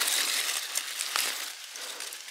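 Dry fallen leaves crackling and rustling as a hand works through the leaf litter and pulls up a small mushroom, louder at first and fading near the end.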